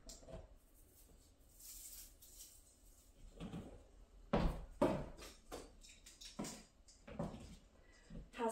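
Christmas ornaments being handled in a plastic storage bin: a soft rustle, then several light knocks and clicks.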